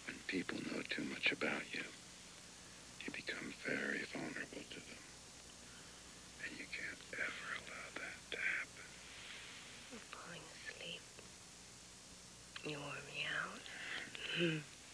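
Whispered speech in several short bursts with pauses between, ending with a low murmured voice near the end.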